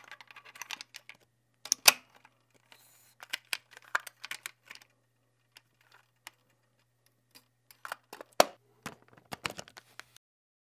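An irregular run of short, sharp mechanical clicks and clacks, with a quiet stretch in the middle and the loudest click near the end. A faint steady hum sits underneath.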